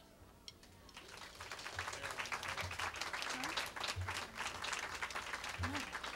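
Audience applauding, starting about a second in after a short hush.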